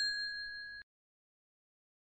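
Bell 'ding' sound effect for a subscribe-bell animation: one struck bell note rings with several clear overtones, fades, and cuts off suddenly less than a second in.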